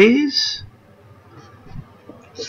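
A man's voice trailing off on a drawn-out word, then a quiet room with only faint, scattered small sounds.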